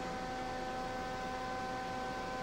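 Steady electrical hum, several fixed tones over an even hiss, holding level without change.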